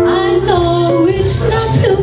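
A woman singing a jazz tune into a microphone, live, over guitar and bass accompaniment.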